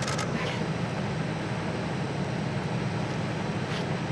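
A vehicle engine idling with a steady low hum. There is a short noise at the start and another near the end as the cloth snake bag is handled.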